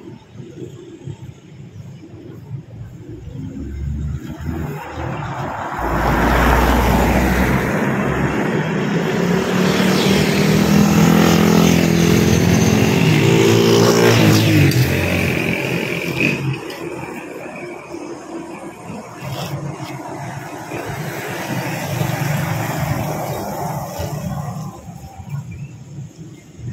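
A motor vehicle drives past on the road. Its engine grows louder over several seconds, then drops in pitch and fades as it goes by.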